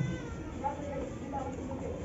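Felt-tip marker squeaking faintly on a whiteboard while a word is written: short, wavering high squeaks.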